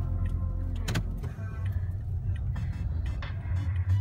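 Car interior road noise: a steady low rumble of engine and tyres as the car drives slowly along a snowy lane, with one sharp knock about a second in.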